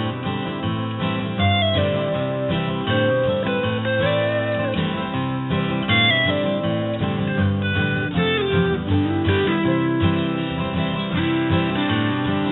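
Calm pop music-on-hold track built on strummed acoustic guitar, with a held melody line gliding over the accompaniment.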